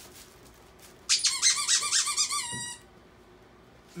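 The squeaker inside a plush dog toy squeezed over and over by hand: a quick run of high squeaks, about five a second, starting about a second in and lasting under two seconds.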